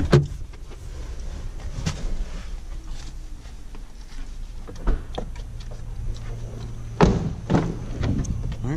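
Doors of a 2016 Honda Civic being worked: a few light knocks, then a loud door thunk about seven seconds in and a smaller latch click half a second later, over a steady low hum from the running car.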